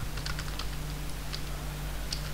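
Computer keyboard being typed on: a few scattered, light keystrokes, over a faint steady low hum.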